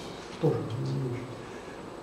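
A man's voice drawing out a single hesitant word, then a short pause with only room tone.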